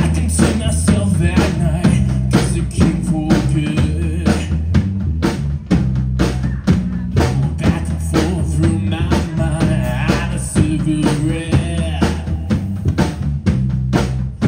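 A live rock band playing: a Pearl drum kit keeping a steady beat under electric bass and electric guitar, with a man singing into the microphone.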